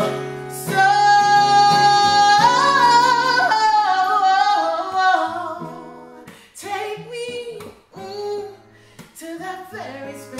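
A woman singing solo with acoustic guitar accompaniment. She holds one long, loud note, climbs to a higher one and runs down through several notes, then sings softer, shorter phrases over the guitar for the last few seconds.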